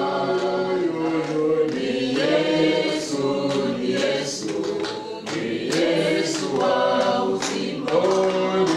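A congregation singing a hymn together in many voices: long held notes that move from one pitch to the next about once a second.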